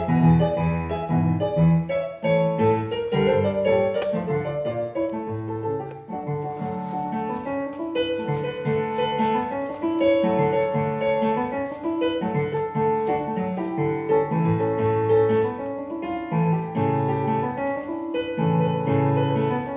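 Yamaha PSR arranger keyboard played in a piano voice with both hands: a melody over chords and low bass notes, flowing without a break.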